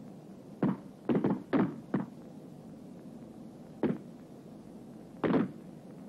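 Rifle shots on a range: a ragged string of single shots from several rifles firing in their own time. Four come close together in the first two seconds, then single shots follow about two seconds apart.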